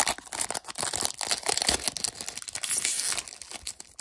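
Foil wrapper of a 2022 Bowman Platinum trading-card pack being torn open and crinkled in the hands: a dense run of crackles.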